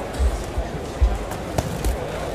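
Four dull thuds and sharper slaps on a boxing ring: boxers' footwork on the canvas and punches landing on gloves. Background music and crowd voices run underneath.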